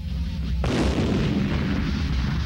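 Battle sound effect of tank combat: a blast about half a second in that trails off in a long, noisy decay, over a steady low rumble.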